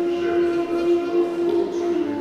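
Armenian duduk playing one long held note, stepping down to a slightly lower note right at the end.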